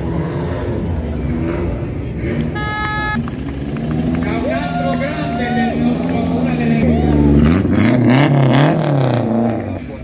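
A rally car's engine running as the car rolls slowly past. It is revved several times near the end, the pitch rising and falling, and this is the loudest part.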